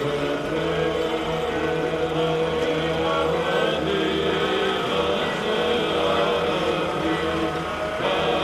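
Slow Orthodox church chanting with long held notes, over a low steady engine rumble from the slow-moving jeep carrying the relics.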